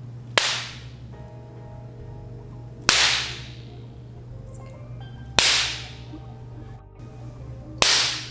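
Four sharp whip cracks, evenly spaced about two and a half seconds apart, each ringing out briefly, over a low steady hum.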